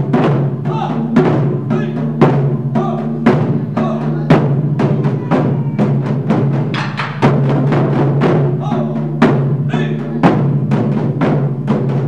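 Taiko drums played by a small ensemble with wooden sticks: a steady rhythmic pattern of several strokes a second, with louder accented hits every second or two and the deep drum tone ringing on between strokes.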